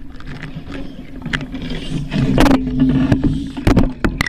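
Muffled underwater sound heard from inside a shark-diving cage: a low, wavering hum, with a few sharp knocks in the second half.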